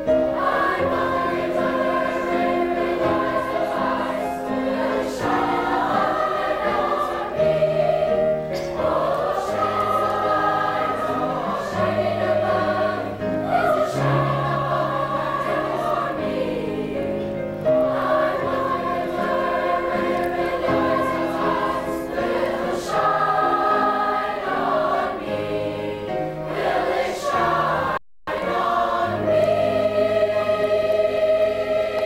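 A girls' choir singing a slow song in sustained, held notes that change every second or so. The sound cuts out for a moment near the end.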